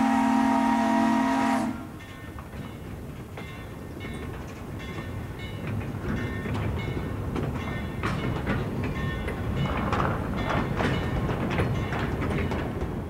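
Steam locomotive whistle blowing, a loud held chord that cuts off just under two seconds in. Then the 2-8-0 steam train running along the track, with rhythmic clicks and clanks growing louder toward the end.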